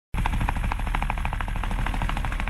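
Helicopter rotor chop: a rapid, steady, rhythmic beat of the blades over a low engine rumble, starting abruptly.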